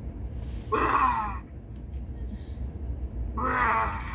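Two short wordless vocal sounds from a person, about a second in and again near the end, the first sliding down in pitch, over a steady low hum.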